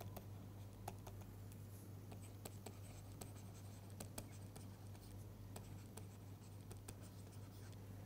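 Faint, irregular ticks and light scratching of a stylus writing on a tablet screen, over a steady low hum.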